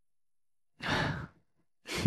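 A person's breathy sigh lasting about half a second, followed near the end by the start of a short laugh.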